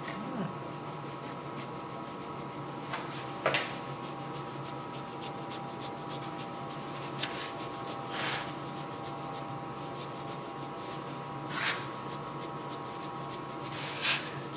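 Flocking fibres being shaken out of a shaker tube, a soft steady rustle with three brief louder shakes, a few seconds in, near the middle and near the end, over a steady background hum.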